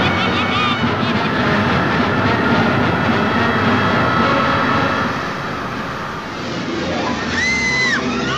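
Loud, steady roaring rush of a tornado sound effect mixed with orchestral music. The roar eases about five seconds in, and a high held note comes in near the end.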